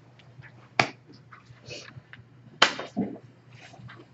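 Two sharp knocks about two seconds apart, with a duller thud just after the second and faint taps and rustling between, over a low steady room hum.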